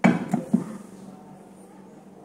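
A wood-stocked FX Yumaja PCP air rifle being set down on a glass bathroom scale: a sudden knock, then two or three lighter knocks within the first half-second as it settles.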